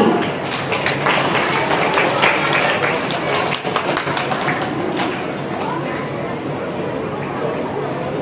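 Audience in a hall murmuring, with scattered clapping that thins out after about five seconds.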